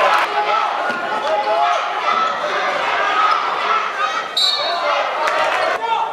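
Live sound of a basketball game in a gym: the ball bouncing on the hardwood, sneakers squeaking in short chirps, and spectators talking, all echoing in the large hall.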